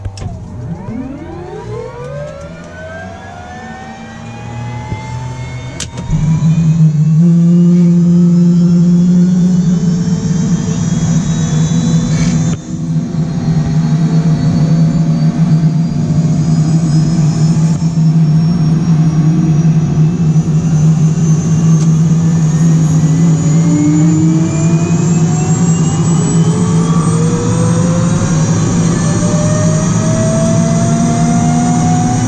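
Bell 206 JetRanger III's Allison 250-C20 turboshaft engine starting, heard from inside the cockpit. A rising starter whine spools up, then about six seconds in a click and a sudden jump in loudness mark light-off. After that a loud steady rumble runs on under whine tones that keep climbing as the turbine accelerates toward idle.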